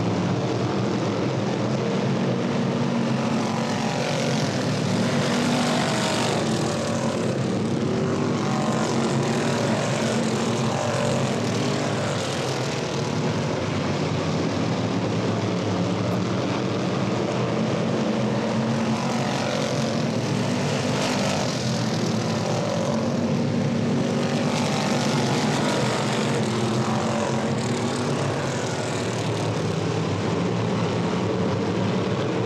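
Engines of a pack of classic-bodied dirt-track race cars running laps, a steady drone that swells and fades as the cars come past.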